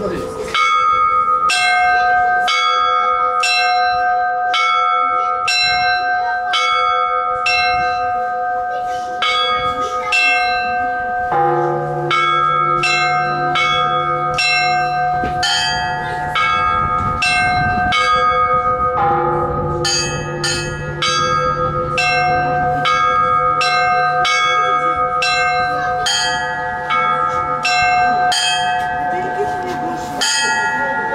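Russian Orthodox bell ringing played by hand on ropes: small bells struck in a quick, steady rhythmic pattern, each strike ringing on. A deeper bell joins about eleven seconds in and keeps sounding under the small bells.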